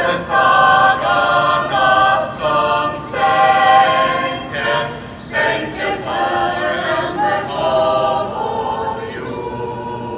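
A small choir singing in parts, notes changing about every half second.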